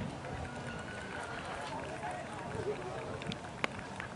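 Dressage horse trotting on an arena's sand footing, its hoofbeats heard against faint background voices, with one sharp click near the end.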